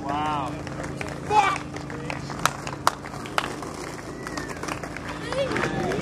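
A few people's voices calling out in short shouts, with sharp knocks scattered through and a steady low hum underneath.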